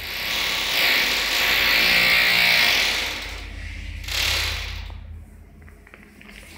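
Passenger elevator's sliding doors and machinery running at the landing: a loud sliding rush for about three seconds, then a second, shorter one about four seconds in, over a low rumble.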